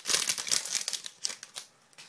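A trading-card pack wrapper being crinkled and torn open by hand: a run of irregular crackles that dies away about a second and a half in.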